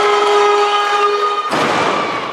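A steady held tone for about a second and a half, then a loaded barbell with Eleiko bumper plates dropped from overhead onto the lifting platform: one heavy crash, the loudest sound, echoing in the hall.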